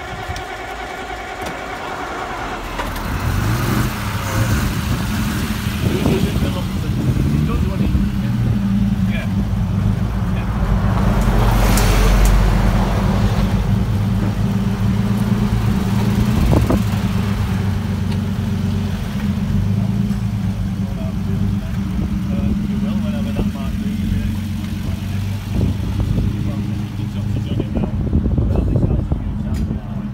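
Vintage 1930s car engine running at a steady idle, growing louder from about three seconds in, with a brief noisy swell near the middle.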